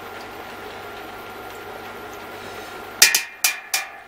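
A steady hiss, then four sharp knocks in quick succession about three seconds in: utensils striking the stainless steel brew kettle.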